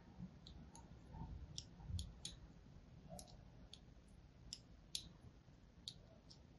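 Faint, sharp clicks, irregular at two or three a second, as a needle tool scores a crosshatch of fine cuts into a bar of soap.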